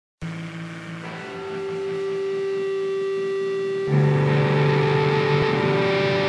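Rock band intro of electric guitars holding sustained, ringing notes. A new note comes in about a second in, and a louder chord is struck just before four seconds.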